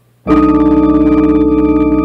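Organ playing one loud sustained chord, B in the bass with E flat, A and D above: the five chord of a D major gospel 'preacher chord' progression. It comes in suddenly about a quarter second in and is held steady.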